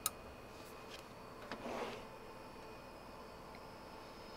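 An RJ45 Ethernet plug clicking into a network port: one sharp click right at the start, then a few faint ticks and a brief rustle of the cable being handled about a second and a half in.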